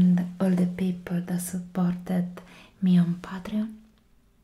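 A woman talking softly, in a steady run of short syllables with no pause until it stops near the end.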